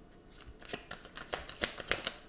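Tarot cards being handled and shuffled: a quick run of papery snaps and flicks of card stock starting about half a second in.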